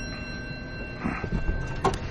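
Elevator doors sliding, with a short soft rush about a second in and a sharp click near the end, over a faint steady hum.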